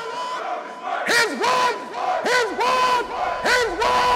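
A group of men shouting a chant in unison: short calls about once a second, each sweeping up and then holding one steady pitch.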